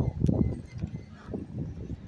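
Irregular low rumbling from a hand-held phone microphone being jostled and buffeted while its holder walks, with the mic partly covered.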